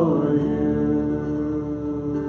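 Worship band music: voices hold a note that slides down and fades about half a second in, leaving a steady sustained chord from the band, with acoustic guitar.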